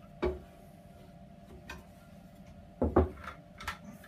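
Workshop handling knocks as a cut block of softwood and an aluminium fence rail are set down and picked up: one knock just after the start, a louder double knock about three seconds in, and a few lighter taps. A faint steady hum runs underneath.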